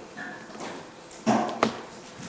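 Quiet room tone, then about a second and a quarter in a short breathy sound from a man's mouth with a faint hum of voice, ending in a sharp click.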